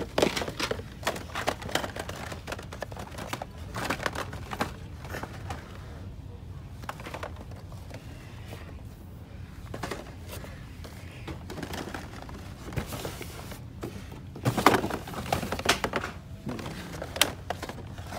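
Plastic blister-carded toy cars and cardboard toy boxes being handled and shifted on a store shelf: irregular crinkles, clicks and knocks, quieter in the middle and busiest near the end.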